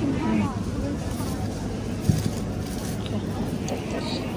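Supermarket background: a steady low hum under faint voices, with one sharp knock about two seconds in.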